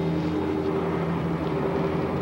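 A car driving at a steady speed: a steady engine drone with road noise.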